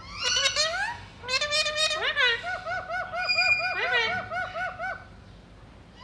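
Pet parakeets calling: several quick rising whistles, then a fast run of short repeated notes, about four a second, that stops about a second before the end.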